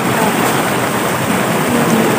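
Rushing water of a small rocky river running over rapids: a steady, even rush.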